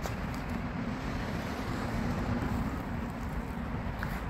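Steady outdoor street ambience: an even low rumble of distant road traffic.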